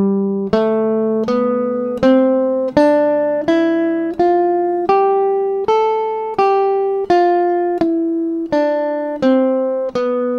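Guitar playing the C major scale one note at a time in the shape-5 fingering, starting on G, evenly spaced at about one and a half notes a second, each note ringing and fading. The line climbs about an octave and turns back down in the last few seconds.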